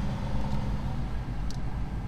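Jeep Grand Cherokee Trackhawk's supercharged V8 idling, heard from inside the cabin as a steady low rumble.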